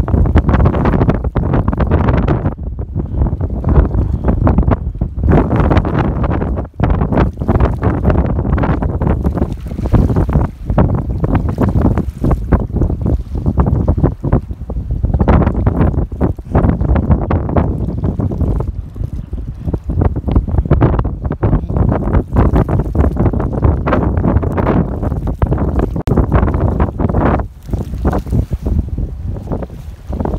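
Wind buffeting the microphone: a loud, low rumbling noise that swells and drops irregularly in gusts.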